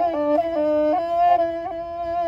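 Kazakh qyl-qobyz, a two-stringed horsehair bowed fiddle, playing a solo kui melody with a rich, overtone-laden tone. The line moves in short steps with quick ornamental flicks, then settles on a longer held note in the second half.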